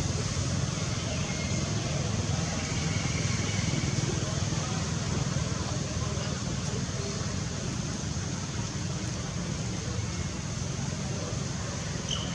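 Steady outdoor background noise: a low rumble with faint, indistinct distant voices, and a couple of faint high chirps in the first few seconds.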